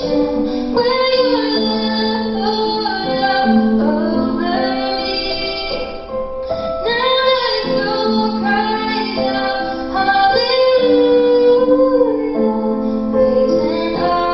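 A young woman singing a slow song solo, with long held notes over a quiet musical backing.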